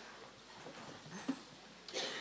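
Quiet room tone of a large hall with a seated audience: faint shuffling and murmurs, and one short sharp click about 1.3 seconds in.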